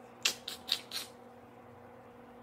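Four quick, scratchy strokes within about a second from makeup being handled close to the microphone.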